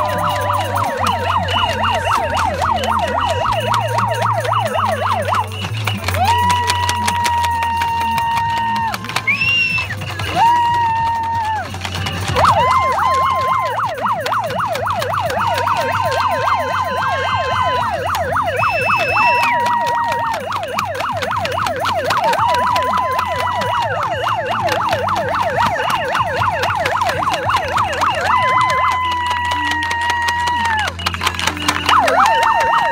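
Hand-held megaphone's built-in siren: a fast warbling yelp, several sweeps a second, taking turns with long held tones that jump up and down in pitch.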